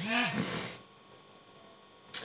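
A man's short wordless vocal sound, a hum-like 'mm' whose pitch rises and then falls, lasting under a second. After it comes quiet room tone with a faint steady electrical hum.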